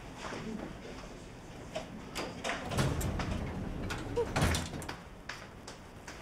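A door being moved and shut, with scattered knocks and footsteps on a hard floor; the loudest thud comes about four and a half seconds in.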